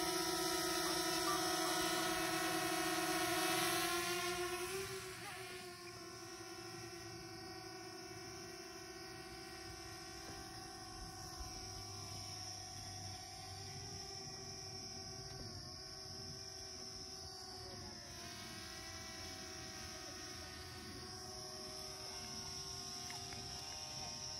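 Small quadcopter drone's propellers buzzing in flight: a steady pitched whine that wavers in pitch at the start, loud for the first few seconds, then drops to a quieter, steady buzz after about five seconds.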